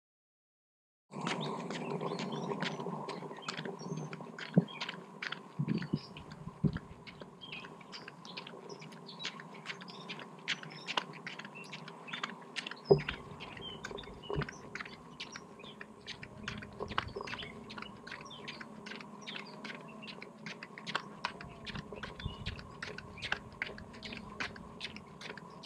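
Outdoor sound starting about a second in: frequent sharp clicks and crackles over a faint steady hum, with small birds chirping.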